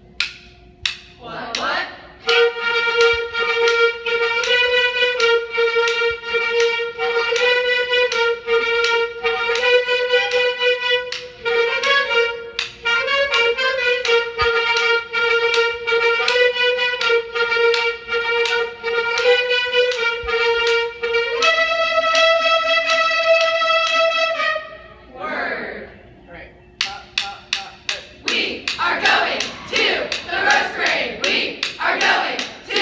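A section of clarinets plays a short melody together, note by note, and closes on a long held note. After a short pause come shouting voices and rhythmic clapping near the end.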